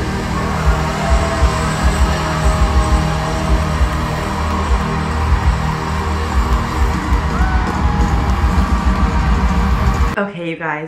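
Loud live pop concert music with a steady thumping beat, heard from among a cheering stadium crowd.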